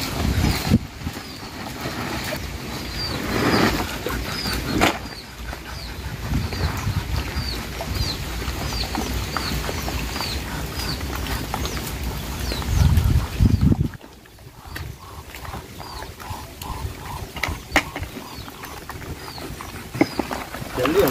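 A bird chirping over and over, a short high note about twice a second, over a low rumble that swells near the middle and stops about two-thirds of the way in.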